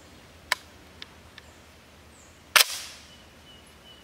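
Heckler & Koch MP5 submachine gun being handled: a sharp metallic click, two lighter clicks, then one loud metallic clack about two and a half seconds in that rings briefly.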